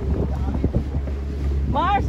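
Wind buffeting the microphone aboard a moving catamaran, a steady low rumble.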